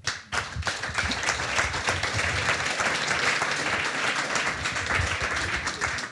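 Audience applause: many hands clapping steadily for several seconds.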